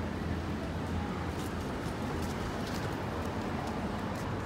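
City street ambience at a busy intersection: a steady low hum of traffic, with faint voices of passersby and a few light ticks.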